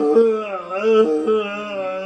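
A voice singing or chanting long held notes that waver and bend slightly in pitch, like a slow chant.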